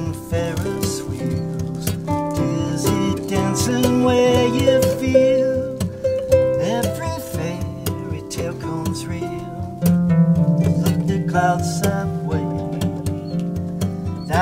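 Harp and acoustic guitar playing together: plucked harp notes over the guitar's steady rhythmic accompaniment.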